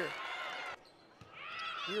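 Indoor court sounds of players' sneakers squeaking on a hardwood volleyball floor over a low background haze. The sound drops away suddenly under a second in, then the squeaks build back up near the end.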